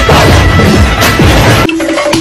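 Aluminium drink cans being crushed and knocked in quick succession under a man's boots as he stomps along a line of them, a loud crunching and clattering over music. The sound cuts off abruptly near the end.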